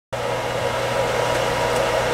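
Jet pump's electric motor running steadily with a hum, pumping water into the pressure tank as the pressure builds.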